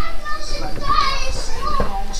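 Children's voices in the background, talking and playing.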